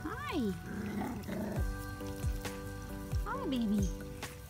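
Scottish terrier puppy giving two short rising-and-falling whines, one near the start and one a little past three seconds in, over background music with sustained chords.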